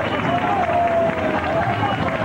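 Samba school parade: a voice singing the samba-enredo in long held notes that slide slowly in pitch, over drumming and crowd noise.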